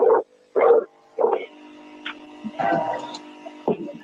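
An unidentified steady buzzing hum with a few fixed tones, heard in the background of a recorded phone call. It starts about a second and a half in, after three short pitched pulses spaced about half a second apart.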